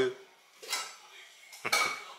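Two short clinks of hard objects knocking together about a second apart, the second louder and briefly ringing.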